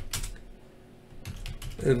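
Typing on a computer keyboard: a few keystrokes just after the start, a short pause, then a quicker run of keys in the second half.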